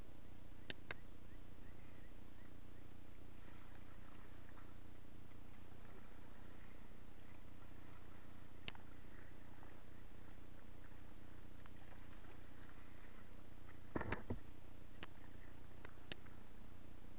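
Kayak under way, heard through a hull-mounted camera: a steady low hum with a few sharp clicks. About two seconds before the end comes a brief cluster of knocks, the loudest moment, typical of the paddle striking the hull.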